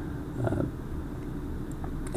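A man's voice giving a brief, low 'uh' hesitation about half a second in, over a steady low hum.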